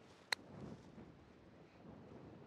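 A C3i wedge striking a golf ball on a short chip shot: one sharp click with a brief ring about a third of a second in, then faint background noise.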